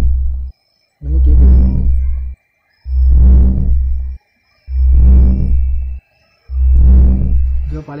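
Electronic radar-style scanning sound effect of a ghost-detector app: a deep, bass-heavy pulse repeating about every second and three-quarters, with a faint steady high tone and short high beeps above it.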